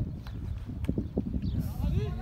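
Indistinct voices talking and calling out across an open field, with a steady low rumble of wind on the microphone.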